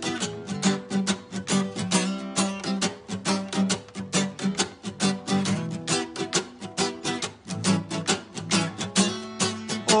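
Acoustic guitar strummed in a steady, even rhythm, playing a song's instrumental intro.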